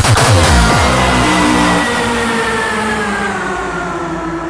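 Hardcore electronic dance music: the pounding distorted kick drum pattern stops under a second in, leaving sustained synth chords that slowly sink in pitch and fade a little, a breakdown in the DJ mix.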